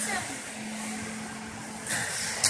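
Steady hiss with a faint low hum, and a brief rustle-like burst of noise near the end.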